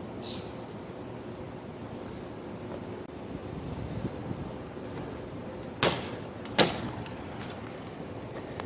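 BMX bike coming off concrete steps and landing hard: two sharp knocks about two-thirds of a second apart as the wheels hit the pavement, over steady outdoor background noise.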